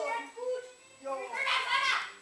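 Voices talking in two stretches, the second louder, towards the end.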